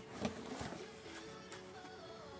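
Quiet background music with steady held notes. Near the start there are a couple of brief scraping sounds: the cardboard lid of a plastic model kit box being lifted off.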